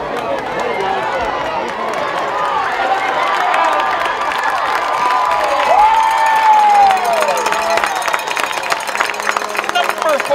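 Football crowd in the stands cheering and shouting during a long breakaway run. The noise builds over the first several seconds, with one long yell about six seconds in, and clapping joins in the second half.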